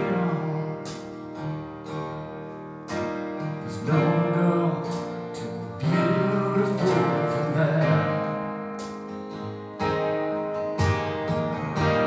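Live band music led by a strummed acoustic guitar, with a string section, keyboard and drums behind it.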